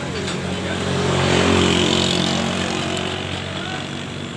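A motor vehicle passing on the road, its engine swelling to a peak about a second and a half in and then fading.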